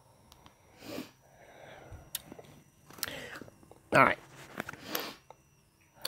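Mostly soft, low speech and breath sounds, with a few faint light clicks and a single louder word about four seconds in.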